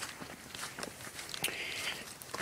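Footsteps walking, with irregular light scuffs and clicks.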